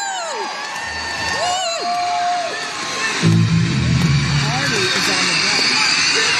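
A concert audience screams and cheers, with long high-pitched screams that rise and fall. About three seconds in, a live rock band starts playing under the cheering.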